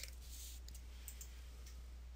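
A single computer mouse click right at the start, then faint background hiss over a steady low hum.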